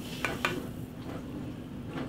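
Two light clinks of an aluminium drinks can against a glass as a pour finishes, followed by a soft fizz of the sparkling coconut water that fades within about a second.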